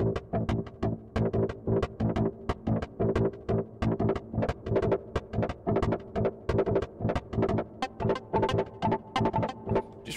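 Fluffy Audio AURORROR 'Zombie Lava' patch in Kontakt, a hybrid cinematic horror synth layering a super-saw synth with clean and distorted plucked guitars. It plays a quick, steady pulsing rhythm of pitched stabs.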